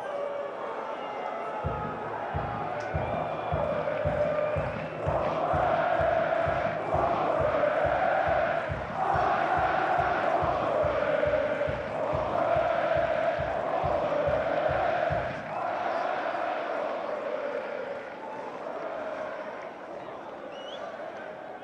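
Football stadium crowd chanting in unison to a steady drum beat. The drumming starts about two seconds in and stops near three-quarters of the way through. The sung chant swells in about five seconds in and fades near the end.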